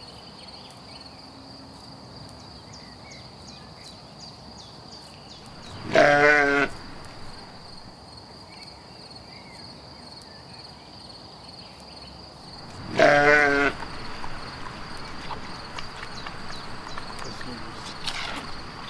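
Carinthian spectacled sheep bleating twice, each call under a second long with a quavering pitch, about seven seconds apart.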